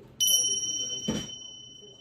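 A single bright bell-like ding that rings on and fades slowly. A short rushing sound comes about a second in.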